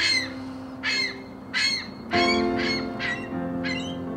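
A gull calling: about seven short cries, some in quick succession about a second in and again past the two-second mark. Background music with sustained notes plays underneath.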